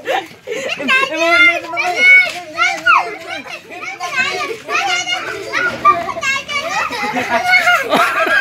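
A group of children shouting and calling out excitedly over one another, their high voices sliding up and down in pitch.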